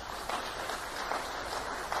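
Audience applauding at a steady, moderate level, the clapping heard as a dense patter through a dated, hissy speech recording.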